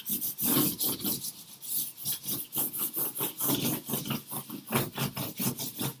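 A stick of charcoal rubbed hard back and forth over drawing paper taped to a wall, a rasping scrape in quick, even strokes, about three to four a second. It is toning the paper, laying down an even mid-tone of charcoal.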